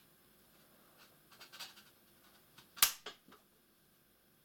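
A plastic card prying at the seam of an ultrabook's aluminium bottom cover: faint scraping and light clicks, then one sharp click almost three seconds in, followed by two smaller clicks.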